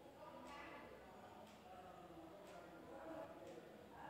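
Near silence: faint sizzle of ivy gourd slices deep-frying in oil, with faint crackles about once a second.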